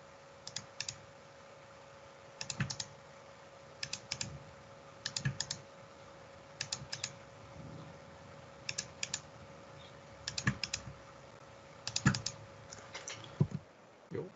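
Computer mouse and keyboard clicking in quick groups of two or three, about every one and a half seconds, as objects and points are picked one after another in CAD software. A faint steady hum runs underneath.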